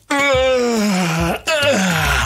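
A man yawning aloud: one long drawn-out yawn, falling in pitch, then a second shorter yawn beginning about a second and a half in.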